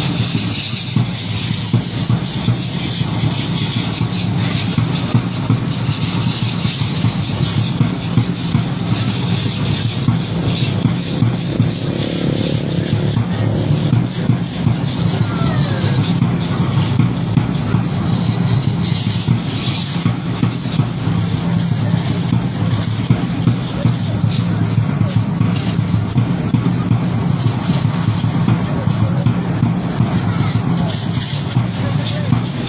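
Drum played in a steady, even beat to accompany a Mexican feather dance (danza de pluma).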